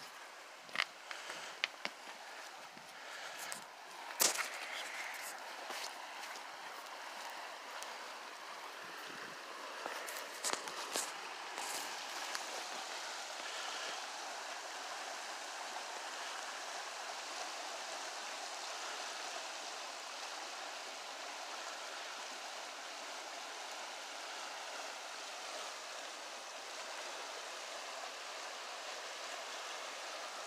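Steady rushing of a swift river running below a dam. A few sharp footsteps and knocks come in the first dozen seconds while walking on the bank.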